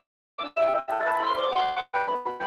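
Organ music with several sustained notes sounding together. The sound cuts out completely for the first half second, then drops out briefly again near the end.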